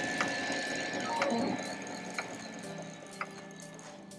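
3D printer running: a steady high whine with a sharp tick about once a second.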